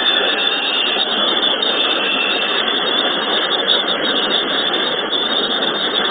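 Large indoor audience applauding, a steady dense clapping.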